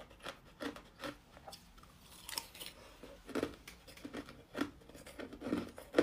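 Hard clear ice being chewed with the mouth closed: irregular crisp crunches as the chunks crack between the teeth, softer for a moment about two seconds in, then louder, fuller crunches from about halfway.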